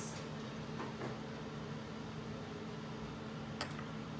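Quiet room tone with a steady low hum, and a faint click near the end.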